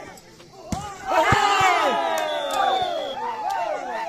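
A sharp smack, then about a second in a crowd of spectators breaks into loud shouting and cheering together, many voices sliding down in pitch, as a rally in a volleyball match ends.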